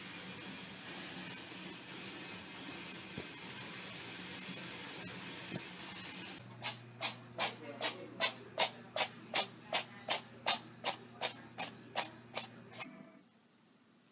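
A steady hiss of water running into a bathtub for about six seconds. Then a quick, even run of about seventeen sharp taps, nearly three a second, over a low hum, which stops about a second before the end.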